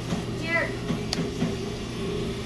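Steady electrical hum of equipment, with a short voice sound about half a second in and a single sharp click a little after a second.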